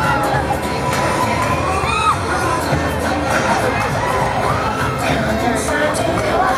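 Several riders screaming and shouting on a spinning fairground thrill ride, their voices gliding up and down, over a steady low rumble.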